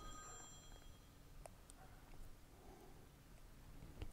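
Near silence, with a few faint clicks and soft handling noise as steel needle rollers are set by hand into the greased bore of a Muncie four-speed transmission countershaft.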